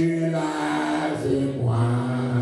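A solo voice singing unaccompanied into a microphone, long held notes stepping down in pitch.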